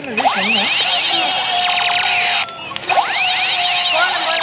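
Battery-operated toy blaster gun sounding its electronic laser effect: fast rising and falling zaps, in two long bursts with a short break about two and a half seconds in.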